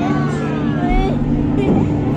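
Riders' voices, with a drawn-out gliding exclamation in the first second, over the ride film's steady low droning soundtrack.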